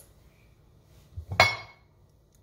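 A single sharp clink of kitchenware against a ceramic plate about a second and a half in, with a brief high ring that dies away quickly.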